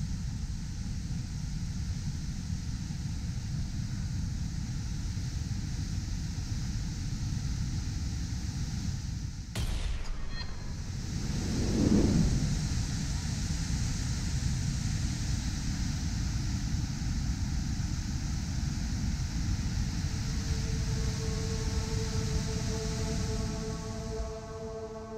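Floodwater pouring over a dam spillway and churning below it: a steady, heavy rush of water. About ten seconds in the sound cuts abruptly, then a louder rush swells and fades. Music with held notes fades in near the end.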